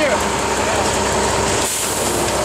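Concrete truck's diesel engine running steadily during the pour.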